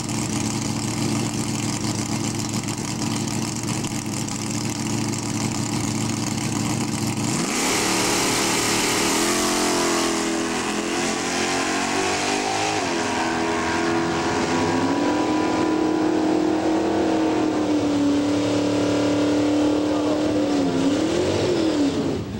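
1968 Chevrolet Chevelle drag car's engine idling with a steady rumble at the start line, then launching hard about seven and a half seconds in. The revs climb and drop back a few times as it shifts up through the gears, then hold one steady note as it runs down the track, wavering as it backs off near the end.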